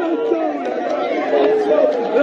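A dense crowd of football supporters, many men's voices shouting and chanting over one another, a little louder in the second half.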